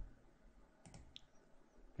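Near silence with a few faint computer-mouse clicks about a second in.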